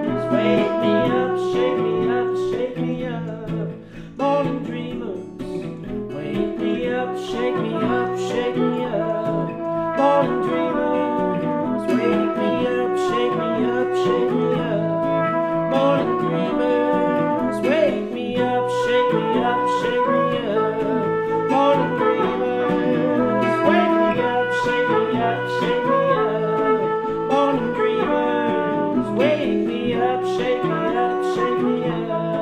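Live acoustic guitar and trumpet duo: the acoustic guitar is strummed in a steady rhythm while the trumpet plays sustained melody notes over it.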